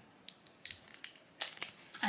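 Paper tear strip being picked and peeled from the rim of a plastic toy can: a few short crinkles and tearing sounds with quiet gaps between them.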